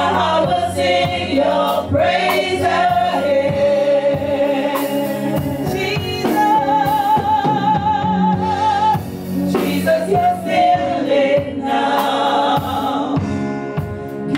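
A group of five women singing a gospel song together through microphones and a PA, over a steady low backing. About six and a half seconds in, one voice holds a long wavering note for a couple of seconds.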